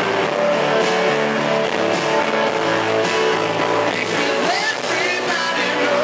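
Loud live band music from the stage, with a grand piano among the instruments, heard from the audience.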